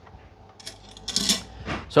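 Wire trivet clinking against the stainless-steel inner pot of a pressure cooker as it is lifted out: a few light clicks, then a louder metallic rattle a little after a second in.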